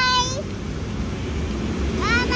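A young child's high-pitched, drawn-out voice ends just after the start, followed by the steady low rumble of road traffic passing close by.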